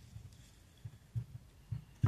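A few faint, dull low thumps as hands press folded paper into a slit lime and move the limes about in a wooden bowl on the table.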